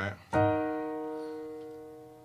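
A single E-flat minor chord struck on a piano keyboard, E-flat in the bass with B-flat, E-flat and F-sharp in the right hand. It sounds about a third of a second in and is held, fading slowly.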